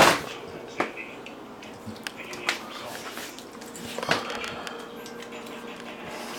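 American pit bull terrier eating raw meat mixed with dry kibble from a stainless steel bowl: chewing with scattered sharp clicks and knocks, the loudest at the very start and others near one, two and a half, and four seconds in.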